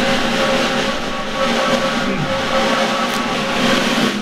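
Steady, continuous drum roll on a drum kit, a suspense roll ahead of a prize announcement, breaking off abruptly at the end.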